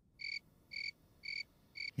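Crickets chirping as a comedy 'awkward silence' sound effect: four short, high, evenly spaced chirps about half a second apart, faint, with silence between them.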